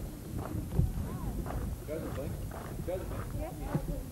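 Indistinct voices at a distance, with a few scattered scuffs and knocks.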